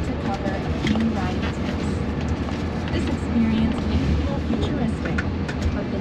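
Road and tyre noise inside the cabin of a Jaguar I-Pace electric car as it drives: a steady low rumble with no engine note. A voice talks quietly underneath.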